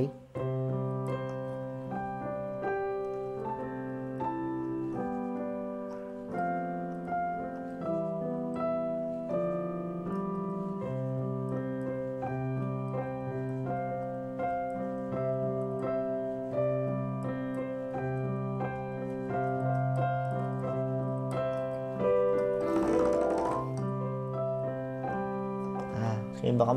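Piano sound from a digital keyboard: a slow melody in C major played over sustained left-hand block chords, the notes changing about once a second.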